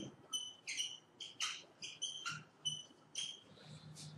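Marker squeaking on a whiteboard as words are written: about a dozen short, high squeaks in quick succession, one for each pen stroke, thinning out near the end.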